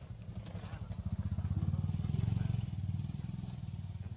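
A small engine running with a fast, even pulse, growing louder to a peak about two seconds in and then easing off, like a motorbike passing by. Under it runs a steady high-pitched insect drone.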